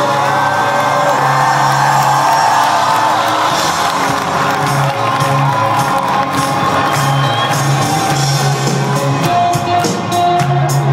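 Rock band playing live, heard from the audience, with the crowd cheering and whooping over the music.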